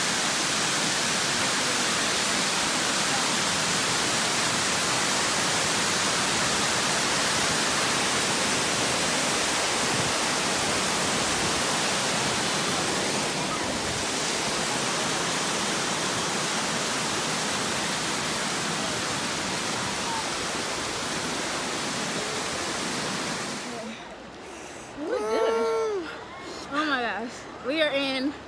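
Large waterfall cascading over rock: a loud, steady rush of falling water that cuts off suddenly near the end, where a voice begins.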